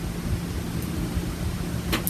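Steady low hiss and hum of room tone, with no distinct event in it.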